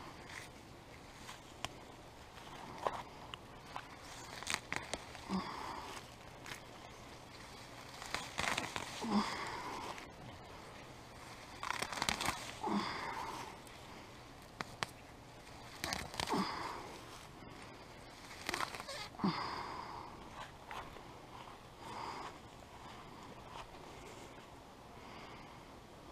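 Weeds being pulled up by hand from garden soil: short rustling, tearing crunches of stems and roots coming loose, repeated about every three to four seconds.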